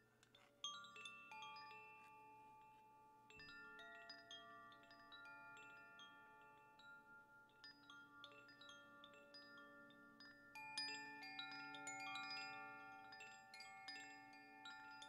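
Hand-held chimes gently swayed, many clear metal tones struck one after another and left ringing so they overlap, quiet throughout. The strikes begin about half a second in and grow thicker and louder about ten and a half seconds in.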